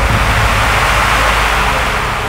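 A loud rushing noise swell, a dramatic sound effect in the background score, building to a peak mid-way and easing off near the end over a steady low drone.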